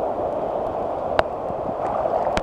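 Ocean surf and churning foam washing around a camera held right at the water's surface, a steady rushing noise with one sharp tap a little over a second in.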